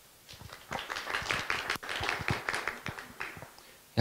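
A run of irregular knocks, rubs and clicks from a handheld microphone being handled and passed from one person to another.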